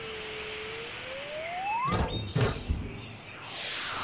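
Cartoon sound effects of a crate flying through the air and crashing down: a whistle that swoops down in pitch and back up again, then loud crashing impacts about two seconds in, followed by a rushing whoosh near the end.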